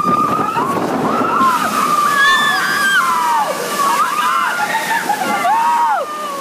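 Water sloshing and rushing around a log-flume boat, with long, wavering, high-pitched voices held over it that glide up and down.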